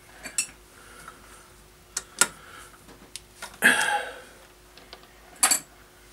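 Metal clicks and clinks as a lathe's three-jaw chuck is loosened and the turned part is taken out of its jaws: scattered sharp clicks, with a longer clatter a little past halfway and another near the end.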